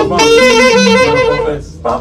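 A single melody line of quick, wavering notes, like a horn phrase, breaking off briefly near the end and starting again.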